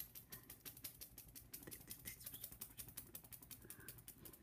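Faint, quick clicking, several clicks a second and uneven, from a Yorkie puppy playing on a wooden tabletop: its toenails on the wood and its mouth working at a hand.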